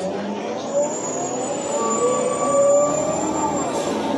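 City bus under way, its drivetrain whining in several tones that rise and fall in pitch over road noise. A thin high whistle runs from about a second in until just before the end.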